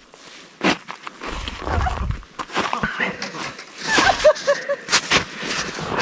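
Irregular sharp clicks and knocks from hands handling a freshly caught perch and its lure close to the microphone, with a low rumble about a second in.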